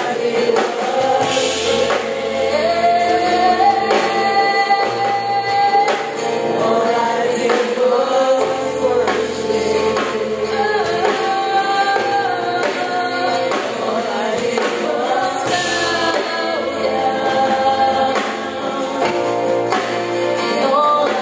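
Congregational worship music: a group of singers on microphones singing a gospel song together over instrumental accompaniment with a bass line. There are two brief bright swells, about a second and a half in and again near 15 seconds.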